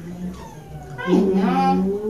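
A cat yowling: one long, loud, drawn-out call that starts about halfway through.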